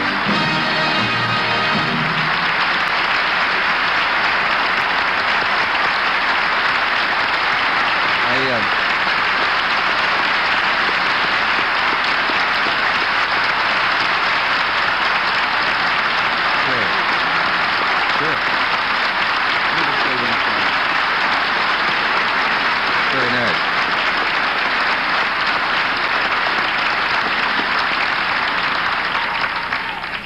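Studio audience giving a standing ovation, steady applause throughout. A band's music plays under it in the first couple of seconds.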